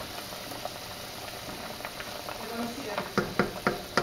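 Wooden spatula stirring spare ribs in a pot of hot liquid over a steady faint hiss, ending about three seconds in with four or five quick knocks of the spatula against the metal pot.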